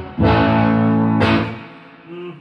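Sterling by Music Man Cutlass electric guitar played through an amp: one chord struck suddenly about a fifth of a second in, ringing for over a second and then dying away.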